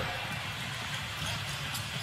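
Basketball court sound: a steady, low haze of arena noise, with a basketball being dribbled up the court.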